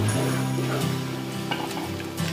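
A flat metal spatula stirs and scrapes a thick, sizzling spiced gunda mixture in a large aluminium pot, under steady background music.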